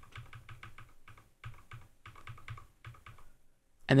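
Computer keyboard arrow key pressed over and over in quick succession, about five clicks a second, stopping a little over three seconds in.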